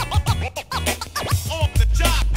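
Hip hop track with turntable scratching: rapid back-and-forth record scratches sweeping up and down in pitch over a drum-machine beat. A deep bass comes back in near the end.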